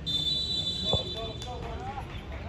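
Referee's whistle blown in one long, steady blast of nearly two seconds, signalling kickoff.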